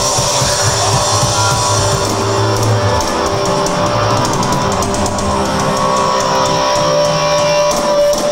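Live rock band playing loud: electric guitars over a drum kit.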